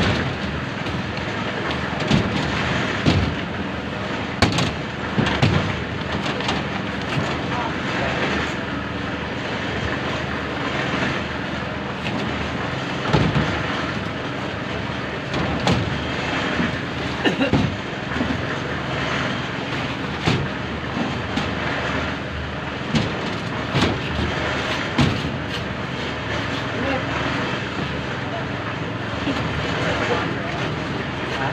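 A steady engine drone under irregular knocks and clanks of concrete buckets being set down and handled on the steel rebar of a slab being poured, with workers' voices in the background.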